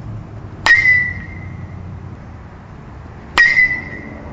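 Metal baseball bat striking the ball twice, about two and a half seconds apart: each hit a sharp ping with a short ringing tone.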